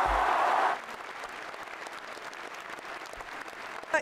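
Large crowd applauding: loud for the first moment, then dropping suddenly to quieter, thinner clapping less than a second in.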